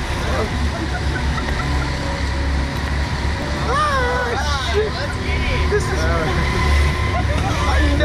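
Men's voices laughing and exclaiming, with one drawn-out gliding call about four seconds in, over a steady low rumble.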